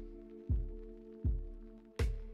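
Electronic keyboard playing a slow passage without vocals: a held chord, with a low bass note struck about every three-quarters of a second, each fading away before the next.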